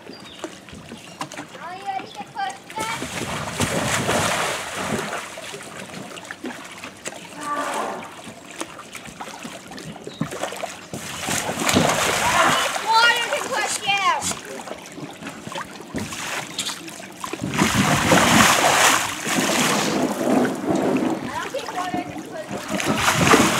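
Pool water splashing and sloshing around a giant inflatable bubble ball as the person inside scrambles, falls and rolls it across the water. The splashing comes in surges a few seconds in, around the middle, and loudest near the end.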